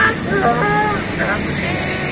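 Street traffic with a motorcycle riding past, its engine a steady low rumble, and a voice calling out briefly near the start.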